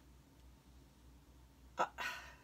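Quiet room tone with faint steady background noise, then a brief vocal "uh" from the woman near the end.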